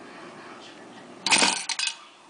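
Cast-iron mechanical coin bank springing its fish up to flip a coin into the barrel: a sudden metallic clatter of the mechanism and coin a little over a second in, followed by a couple of sharp clicks as the coin settles.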